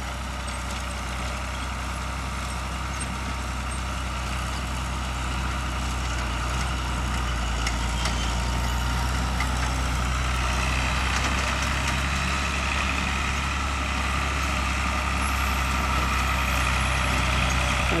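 John Deere farm tractor engine running steadily as it pulls a corn planter across the field. It grows gradually louder as it comes near.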